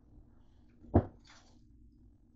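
A frying pan knocks once on a glass cooktop about a second in, followed by a short scraping swish as it is shifted.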